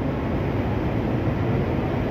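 Steady low rumble of city street noise with no distinct event standing out.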